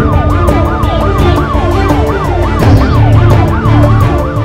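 A siren yelping, its pitch rising and falling about three times a second, mixed into theme music with a steady beat and heavy bass.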